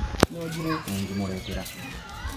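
People's voices talking in the background, with a single sharp click a fraction of a second in.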